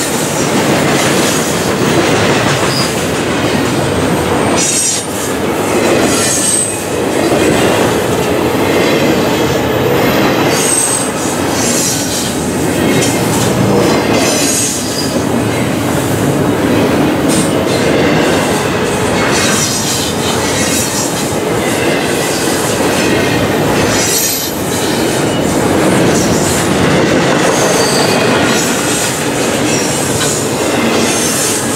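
CSX double-stack intermodal train's loaded well cars rolling past close by: a loud, steady rumble and rattle of steel wheels on the rails, with a few brief high-pitched wheel squeals and some clacks over the rail joints.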